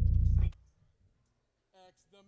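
Electric bass guitar holding a low note that is cut off abruptly about half a second in, with a click as the string is muted. Then near silence, with a brief faint voice near the end.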